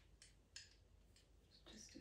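Faint, short scratchy strokes of a pastel pencil on textured pastel paper, several in a row, the clearest about half a second in; a soft voice begins near the end.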